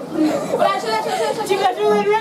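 Several girls talking over one another at once, in lively chatter.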